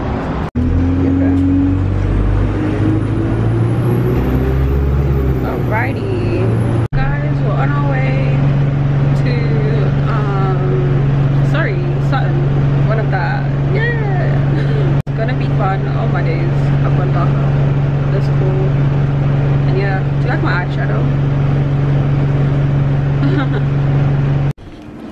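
City bus engine running, heard as a steady low hum from inside the passenger cabin, with voices over it. In the first few seconds a bus pulls away with shifting low engine tones and a high whine that rises and falls.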